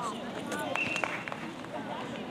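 Indistinct, overlapping voices of players and onlookers on an outdoor netball court, with a short, steady umpire's whistle blast about three-quarters of a second in.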